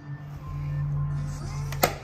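Background music, with one sharp click near the end as an air filter box clip snaps open.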